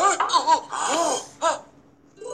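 Laughter from a high voice, four or five short bursts that rise and fall in pitch.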